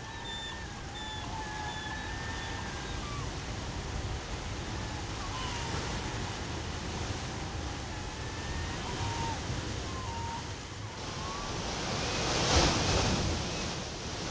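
Ocean surf breaking on a rocky shore, a steady rushing wash with a wave crashing louder near the end.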